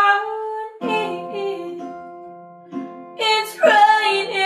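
Acoustic pop song: a woman sings a held note, a small acoustic guitar comes in with chords about a second in, and her voice returns near the end.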